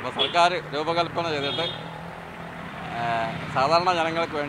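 A man speaking, with a motor vehicle running past on the road, a steady low engine hum under the voice in the first half.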